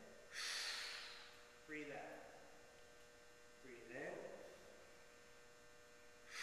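Faint breaths and short voiced breath sounds from a person: a sharp breath about half a second in, then brief voiced sounds near two and four seconds, over a steady faint hum.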